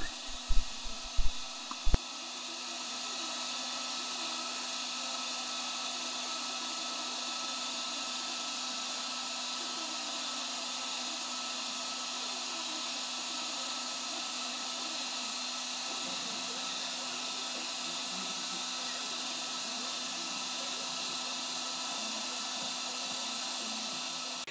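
Schaublin lathe running steadily while a tool faces down a small brass nut, an even motor hum and hiss with a few constant tones. A few short sounds come in the first two seconds, then the running sound swells over about a second and a half and holds level.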